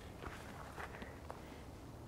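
A few faint footsteps as a person takes several steps.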